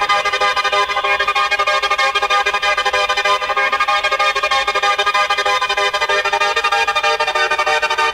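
Electronic dance music in a breakdown: held synth chords over a fast ticking pattern, with no kick drum or bass.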